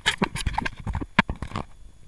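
Water slapping and splashing against a waterproof camera housing at the sea surface beside a kayak hull: a rapid, irregular run of clicks and splashes for about a second and a half, thinning out near the end.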